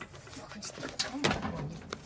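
A man's low grunts and strained muttering under his breath in a small tiled room, loudest about a second in.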